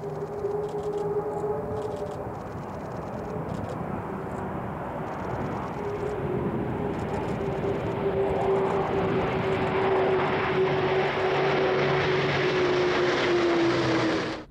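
Airbus A400M Atlas with four TP400 turboprops flying low past: a steady propeller hum that slides slowly lower in pitch, under a rushing engine noise that grows steadily louder as the aircraft comes close.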